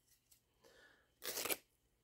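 A brief rustle of handling noise about a second in, from the cut strip of double-sided grip tape and the putter being handled; otherwise near silence.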